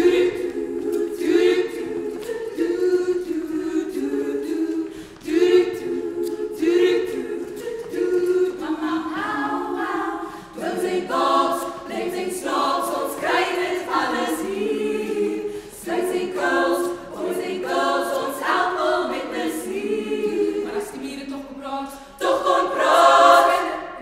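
Women's choir singing in harmony without instruments, a steady lower vocal part under a moving upper line, swelling to its loudest near the end.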